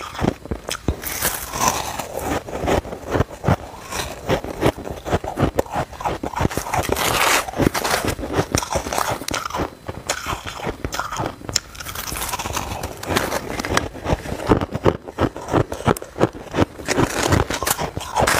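Close-miked crunching and chewing of powdery freezer frost, a dense run of crisp crackles from the mouth, with a spoon scraping and scooping frost from a steel bowl.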